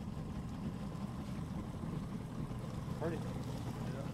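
Boat motor running steadily at slow trolling speed, a continuous low rumble, with water and wind noise over it.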